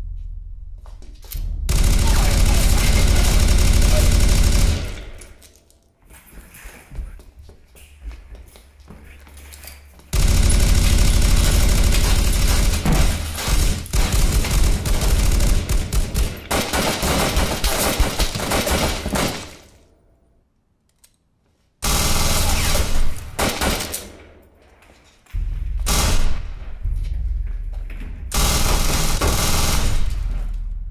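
Bursts of rapid automatic gunfire: a first burst about two seconds in, a long run of fire lasting several seconds from about a third of the way in, then after a brief silence several shorter bursts near the end.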